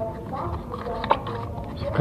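Hands pushing the rubber dust cover back over a motorcycle headlight's bulb socket: soft rubbing and handling sounds, with one sharp click about a second in.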